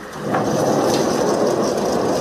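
Large sheet-metal sliding gate rolled shut along its track: a loud, steady rumbling rattle that starts a moment in.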